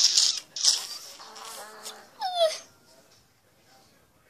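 A young girl giggling in short breathy bursts and squeaks, with a high squeal that falls sharply in pitch a little past two seconds in.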